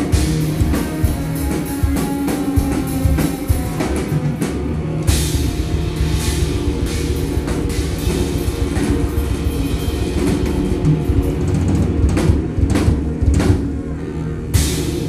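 Live band playing an instrumental passage, with drum kit and electric bass guitar carrying the groove and a cymbal crash about five seconds in.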